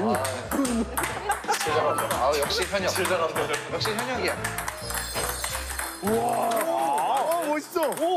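Fast table tennis rally: the ping-pong ball clicking off paddles and table several times a second. Under it run background music with a steady bass line and people's voices going 'ooh'.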